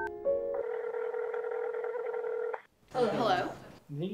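Touch-tone phone keypad beeps as a number is dialled, then a steady ringing tone of about two seconds as the call rings through. Near the end a brief voice answers.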